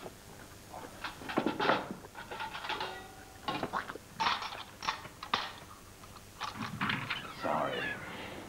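Glass champagne flutes clinking together as they are gathered onto a silver tray, in scattered bright clicks. A brief wavering vocal sound comes near the end.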